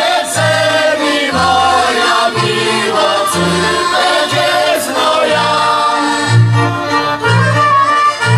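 Polish highland folk band playing a tune on fiddles, clarinets and accordion, with a double bass playing low notes on the beat and a group of voices singing along.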